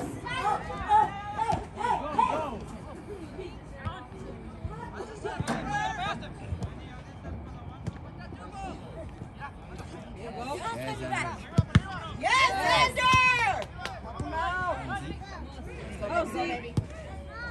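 Players and sideline spectators at a soccer game shouting calls across the field in short bursts, loudest about three-quarters of the way through, with two sharp knocks just before that loudest stretch.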